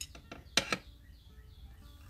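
A few small metal clicks, with a short clattering click about half a second in, as a peg and its back are pushed onto a perforated metal wig jig pegboard.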